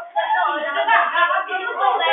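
Several students' voices talking and calling out over one another in a classroom, with some hand clapping.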